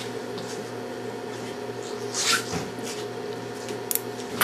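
Steady low electrical hum, with a brief soft hiss about halfway through and a sharp click near the end from the steel surgical instruments being handled as clamps go on.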